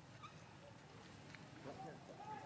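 Mostly faint background. Near the end, a young macaque starts a wavering, pitched call that carries on.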